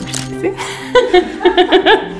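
A woman laughing in a run of quick bursts, starting about halfway through, over steady background music.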